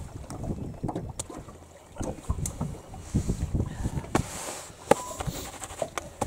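Water lapping against an aluminium boat hull, with wind on the microphone and a few sharp knocks on the boat.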